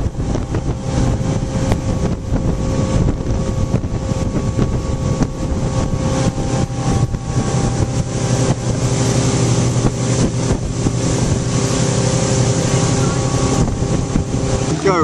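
Motorboat engine running steadily at towing speed, with wind buffeting the microphone and the rush of the wake.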